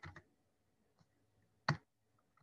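Computer keyboard keystrokes: a quick cluster of key clicks at the start and one sharper key press near the end, as a new line is begun and a number typed.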